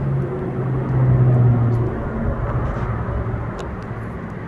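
Low engine rumble with a steady hum, loudest about a second in and easing off near the end.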